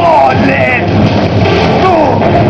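Live electro-industrial (EBM) band performance: loud, dense synthesizer music with repeated falling pitch glides over a heavy low end.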